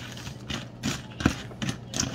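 Metal spoon stirring cereal in milk in a plastic bowl, knocking against the bowl: about five light clinks and taps, the clearest just past the middle.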